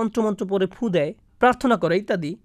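Speech only: a voice talking, with a short pause about a second in.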